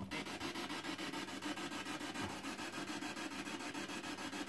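Quiet room tone: a steady faint hiss with a low hum underneath and no distinct sound standing out.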